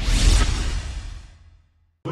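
Whoosh sound effect of a TV news logo animation, with a deep low end. It swells about a quarter second in and fades away over about a second and a half.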